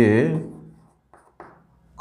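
Chalk writing on a blackboard: two short, faint strokes about a second in, after a man's voice trails off.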